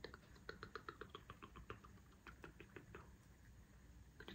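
Faint, rapid soft clicks, about five a second, of fingertips patting under-eye cream into the skin, with a short break midway.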